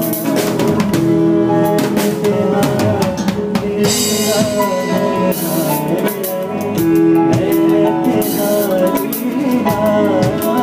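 Live band music with a drum kit played loud and close, snare, bass drum and cymbal hits over held notes from the other instruments.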